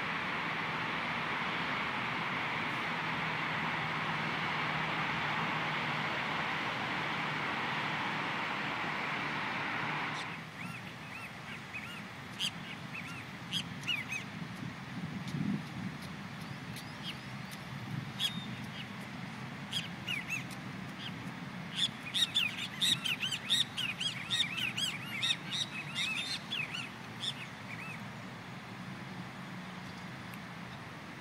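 Birds chirping: scattered short, sharp calls that build into a dense flurry of chirps about two thirds of the way through. For the first third, a steady noise plays and then cuts off abruptly.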